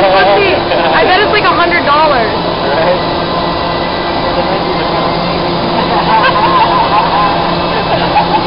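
Vertical wind tunnel's fans running, a loud, steady rush of air with a low hum underneath, while a person floats in the flight chamber. Voices are heard over it at the start and again a little after halfway.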